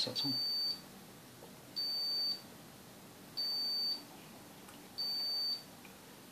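Digital insulation resistance tester (Vici VC60B+) beeping in the middle of a megohm test: four short, high-pitched beeps, evenly spaced about one and a half seconds apart.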